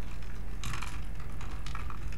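Typing on a computer keyboard: quick, irregular clusters of key clicks over a steady low hum.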